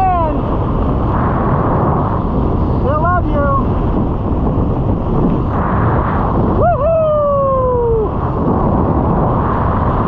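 Wind buffeting the microphone under an open parachute canopy, a loud steady rush. Over it come a few brief falling pitched sounds, and a longer one about seven seconds in that rises and then slides slowly down.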